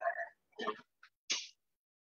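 A man's voice in a few short, broken fragments with silent gaps between them, halting murmurs and a mouth click rather than full words, heard over a video-call connection.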